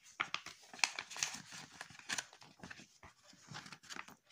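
Glossy paper catalogue pages rustling and crinkling as they are unfolded and turned by hand, in short irregular strokes.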